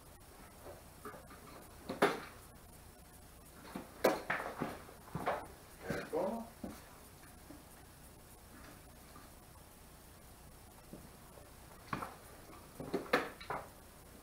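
Scattered knocks and clatters of tools and parts being handled on a workbench, a few short sharp ones at a time with quiet gaps between, heard in a small room.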